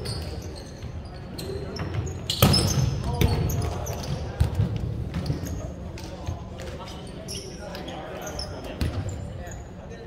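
A volleyball smacks loudly about two and a half seconds in, and the sound rings on in the gym hall. Short high sneaker squeaks and light ball taps on the hardwood floor come and go around it.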